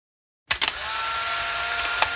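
A brief mechanical whirring buzz that starts abruptly with a few clicks and runs steadily.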